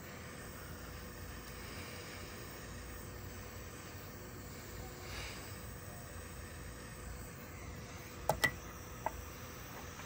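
Small handheld heat gun running as a steady, even hiss with a faint steady tone while it shrinks heat-shrink tubing over a wire splice. A few sharp clicks come near the end.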